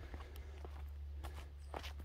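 Footsteps on a concrete garden path, a few soft steps spread through the moment, over a low steady rumble.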